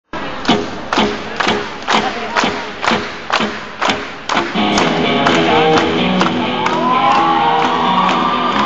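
Live rock band through a PA: a steady drum beat of sharp hits, about two a second, then at about four and a half seconds the electric guitars come in and the full band plays.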